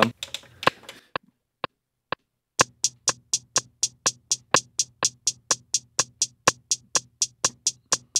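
Hi-hat sample played on an Akai MPC One's pads: a few single hits, then from about two and a half seconds in a steady pattern of about four hits a second. The hits alternate a little louder and a little quieter, set by 16 Levels velocity.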